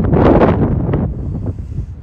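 Wind buffeting the microphone: a loud rush of noise, strongest in the first second and fading out near the end.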